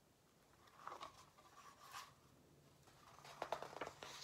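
Faint rustling of an old paper picture book being handled: a short rustle about a second in, another at two seconds, and a quick run of crackles near the end, the loudest part.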